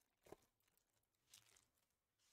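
Faint tearing and crinkling of a foil trading-card pack wrapper being pulled open by hand, in two short rips: a sharper one just after the start and a softer one a little past halfway.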